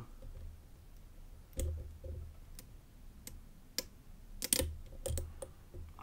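Faint, irregular metallic clicks of a hook pick working the pin stacks in the Extra Class cylinder of an Abus Titalium 98Ti/70 padlock during single pin picking, as the pins are worked back through and set. The clicks come more often in the second half, with a couple of dull low bumps from the lock being handled.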